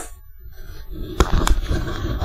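Handling noise from a large metal-framed loudspeaker driver being shifted about on its cabinet: low rustling and rumbling, then two sharp knocks a third of a second apart about a second in.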